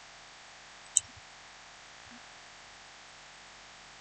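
A single sharp computer mouse click about a second in, over a steady faint hiss.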